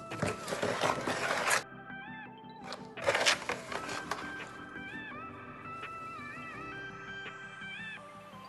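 Background music with a lilting melody throughout. Twice, in the first second and a half and again briefly about three seconds in, a louder rough scraping noise rises over it, the sound of a spoon stirring wet concrete mix in a bowl.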